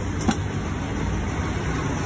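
Steady low background rumble, with a single sharp click about a quarter second in.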